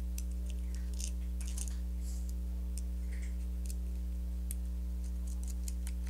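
Small metal hardware (bolts, washers and nuts) clicking and tapping in the hands as they are fitted through the holes of a printer frame plate, a dozen or so light, irregular clicks. A steady low hum runs underneath.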